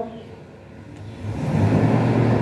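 A pause in speech, then a low rumble that swells up about a second in and holds steady.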